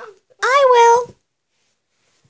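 A girl's single high-pitched, drawn-out vocal sound, rising then held for under a second, like a meow, made in a play voice for a plush toy.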